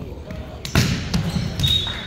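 A volleyball struck hard by a hand on a jump serve: a sharp slap about three quarters of a second in, another hit shortly after, and echoing gym noise around them. A brief high squeak comes near the end.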